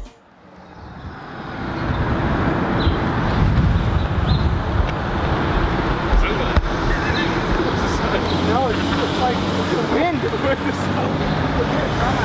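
City street traffic: cars passing through an intersection, a steady roadway rumble and tyre noise that fades in over the first second or two. Faint voices come through about two-thirds of the way in.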